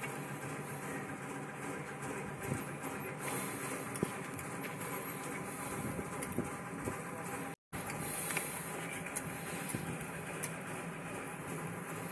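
A steady mechanical hum, like a running engine, with a few sharp taps; the sound drops out for a moment a little past halfway.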